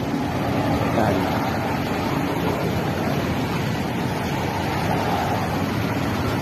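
Steady rushing noise of busy road traffic close by, with cars driving past and stopping at the roadside.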